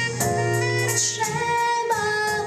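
A girl singing a slow ballad into a microphone over instrumental accompaniment, holding long notes, with the notes changing near the end.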